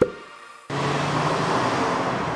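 The intro music ends on a short hit that dies away, and after half a second of silence steady street traffic noise begins, a constant rushing hiss with a low engine hum underneath.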